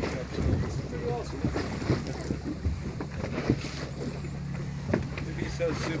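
Boat engine running steadily at a low hum, with wind buffeting the microphone and water slapping and splashing against the hull.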